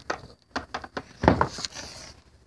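Scattered knocks and rustles of movement, with one louder thump a little after a second in.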